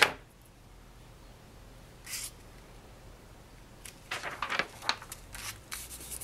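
Paper craft handling: a sharp click at the start, then a quiet stretch with one brief swish. From about four seconds in comes a run of irregular rustling and sliding as a sheet of paper is handled and spread flat by hand.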